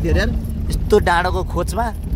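Steady low rumble of a car driving, heard from inside the cabin, under people's voices calling out.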